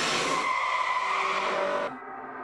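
Car tyres screeching in a skid: a high squeal over a hissing rush that cuts off suddenly just before the end.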